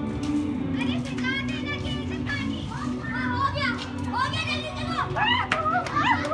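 A group of children shouting and calling out at play, many high-pitched voices overlapping throughout.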